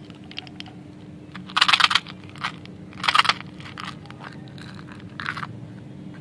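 Small hard candy balls poured out of a plastic container into a hand, rattling in two loud bursts about a second and a half and three seconds in, then a shorter one near the end.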